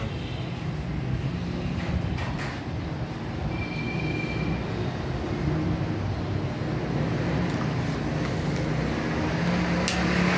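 A steady low background rumble, with a few faint knocks and a sharp click near the end as a knife cuts into a plucked hen on a wooden chopping block.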